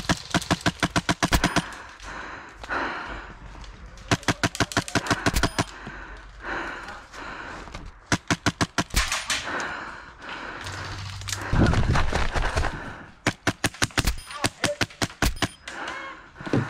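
HPA airsoft rifle firing in rapid bursts, about ten shots a second, four or five strings of shots with short pauses between them. About twelve seconds in there is a louder low rumble.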